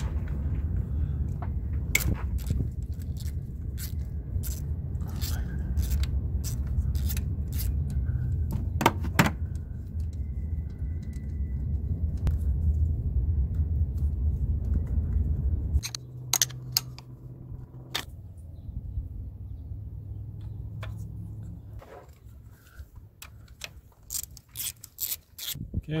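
Ratchet with a 10 mm socket and the small metal bolt of a camshaft position sensor being worked by hand: irregular sharp metallic clicks and clinks over a steady low rumble, with a quicker run of clicks in the last few seconds as the new sensor is bolted down.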